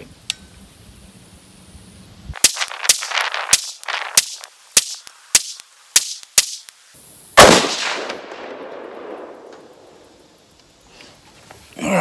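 Rifle gunfire from a 20-inch heavy-barrel 6.5 Grendel AR-15: a quick string of sharp cracks about half a second apart, then one louder shot about seven seconds in with a long rolling echo that fades over a few seconds.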